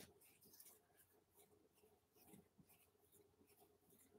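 Near silence: room tone with a faint steady hum and a few soft scratchy clicks.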